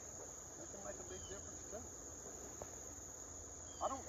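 Insects trilling steadily at one high, unchanging pitch, over a faint low hum.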